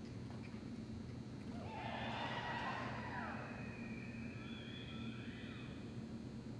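A horse whinnying: one loud call with gliding pitch, starting about a second and a half in and lasting nearly two seconds, followed by thin, steady high-pitched tones.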